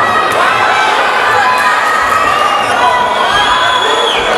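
Fight crowd shouting and cheering, many voices overlapping, loud and continuous.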